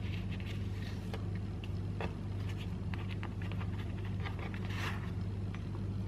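Soft rustling and scattered light ticks of a thin yufka pastry sheet being rolled by hand on a wooden cutting board, over a steady low hum.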